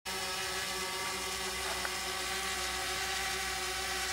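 Yuneec Typhoon H hexacopter hovering, its six propellers giving a steady, even hum.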